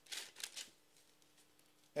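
Thin Bible pages being turned by hand: two short, faint paper rustles in the first half second.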